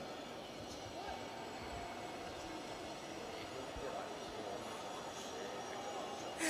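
Faint, steady outdoor ground ambience picked up by the field microphones: an even background hum with faint, indistinct distant voices.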